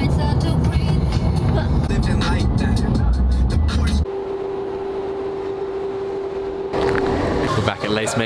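Road and engine rumble inside a moving car's cabin for about four seconds, under music. It cuts off suddenly to quieter music with one steady held note.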